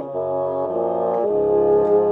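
A 1920s Buffet-Crampon bassoon layered in four parts, a bassoon quartet, playing sustained chords over a low bass line. The chords change about three times, roughly every two-thirds of a second.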